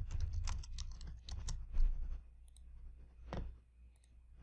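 Computer keyboard typing: a quick run of keystrokes over about two seconds, then a few scattered ones and a single louder click a little past three seconds in.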